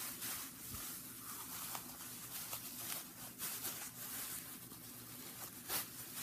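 Thin plastic produce bags crinkling and rustling as they are handled and stuffed into a cardboard toilet-paper tube: a faint, irregular run of small crackles.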